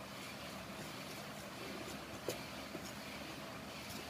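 A fork stirring egg into flour in a bowl, with a few light clicks of the fork against the bowl, the clearest about two seconds in, over steady background noise.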